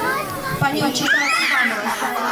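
Young children's voices in a group, talking and calling out over one another, with one high squeal about a second in.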